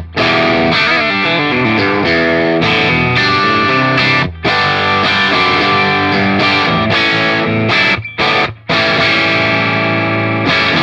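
Strat-style electric guitar played through a Big Joe Vintage Tube overdrive pedal set to about half gain, into a clean amp: a fat, natural-sounding light overdrive on chords and riffs. The playing stops briefly about four seconds in and again around eight seconds.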